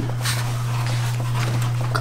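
Faint rubbing and small clicks of a rubber turbo intake hose being twisted and tugged loose from the engine, over a steady low hum. There is a sharp click right at the start.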